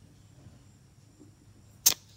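A brief, sharp hiss of air from a tyre's valve stem as a digital pressure gauge is pressed onto it to take a reading, near the end; faint background before it.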